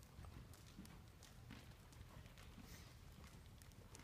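Faint hoofbeats of a horse trotting on the soft dirt footing of an indoor arena.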